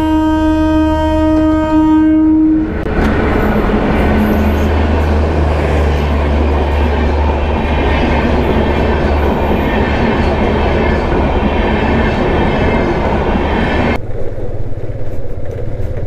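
Passenger train's horn sounding one long, steady blast for about three seconds, then the train's coaches rolling past a level crossing for about ten seconds, wheels rumbling on the rails. Near the end the sound cuts to motorcycle riding noise on the road.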